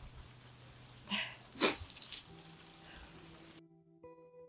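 A few short, sharp animal calls in the background, the loudest about halfway through, with soft background music coming in afterwards.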